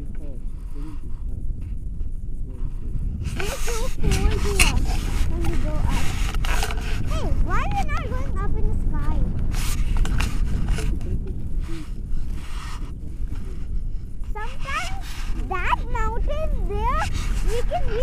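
Steady low wind rumble buffeting the microphone in flight. Over it, a person's voice makes high, sliding wordless sounds from about four seconds in, and again near the end.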